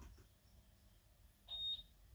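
A single short, high-pitched electronic beep, one steady tone lasting about a third of a second, about a second and a half in, against faint room noise.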